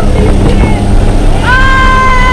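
Loud steady rush of the jump plane's engine and wind at the open door, with a woman's long high-pitched yell starting about one and a half seconds in.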